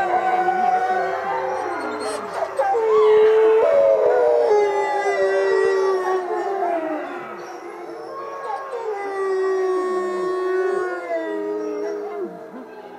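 A chorus of many wolves howling together: long, overlapping howls at different pitches, some sliding up or down. The chorus eases off in the middle and swells again near the end.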